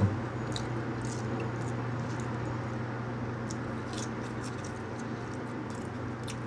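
A man chewing a mouthful of hamburger, with a few faint wet mouth clicks, over a steady low hum.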